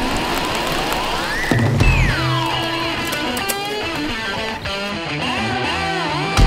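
Background rock music led by electric guitar: a rising slide over the first second and a half, then a heavier low end comes in with sustained guitar notes.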